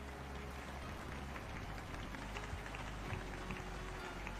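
Faint background noise of an online video call: a steady low hum under a light hiss, with scattered faint crackles.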